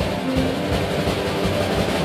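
Live rock band playing, with the drum kit to the fore and amplified electric guitar underneath.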